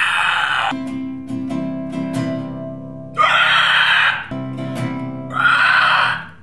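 Classical guitar being strummed, its chords ringing, with three loud wordless screams of about a second each over it: one at the start, one about three seconds in and one near the end.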